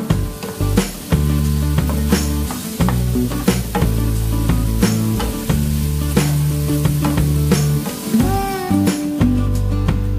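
Tofu cubes and chopped pechay sizzling in a hot nonstick frying pan as a wooden spatula stirs them, under background music with a steady beat.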